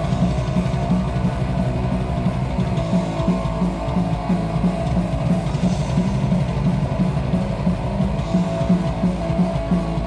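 Metal band playing live at full volume: fast, dense drumming under distorted electric guitars and bass, heard close from the stage.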